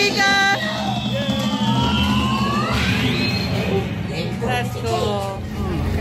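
Dark-ride soundtrack: music and voices over a steady hum, with long sliding tones through the middle, one falling and one rising.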